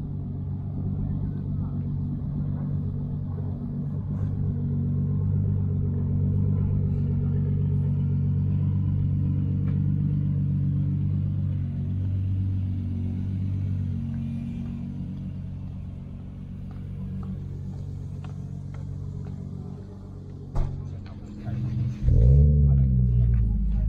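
A car engine running at a steady low idle, growing louder through the middle and fading over the second half. A short bump comes near the end.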